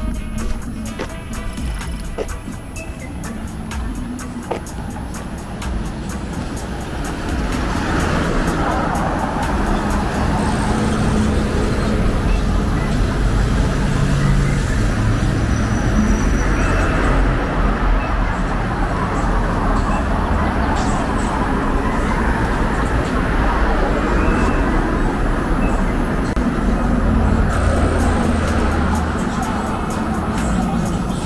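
Street traffic noise, a steady rumble and hiss of vehicles on the road, growing louder about a quarter of the way in and then holding, with music playing in the background.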